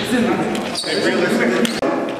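Basketball game sound in a gym: a ball bouncing on the court and players' voices echoing in the hall. The sound breaks off for a moment near the end.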